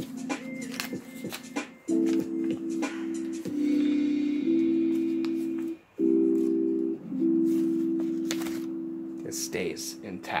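Sustained keyboard chords in the background, held and changing every second or so, with a brief break just before the middle. In the first couple of seconds there are short crinkles and clicks of paper being handled.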